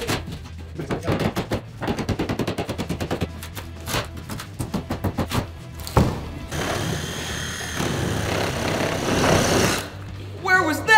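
Drywall and framing being broken out with a pry bar: a quick run of sharp knocks and cracks. About six seconds in, a handheld power tool starts and runs steadily with a high whine, cutting through the framing around the door opening.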